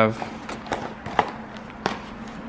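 Cardboard takeout box being handled and opened on a tabletop: a handful of short clicks and crackles, the sharpest about halfway and near the end.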